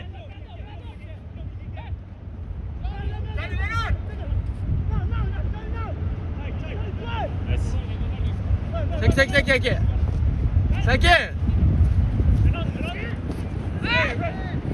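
Soccer players shouting calls to each other across the pitch, the two loudest shouts past the middle, over a steady low rumble.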